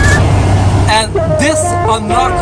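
A man's voice over the steady low rumble of a car's cabin while driving.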